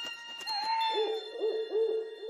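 Cartoon owl hooting sound effect over a steady ringing chime: one falling hoot, then a quick run of lower hoots, about four a second.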